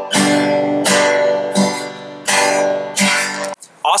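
Acoustic guitar strumming an open G major chord about five times, each strum ringing on; the playing stops shortly before the end.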